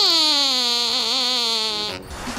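A glove-puppet dog's squeaker voice: one long, high squeak that glides down in pitch, with a small wobble about a second in.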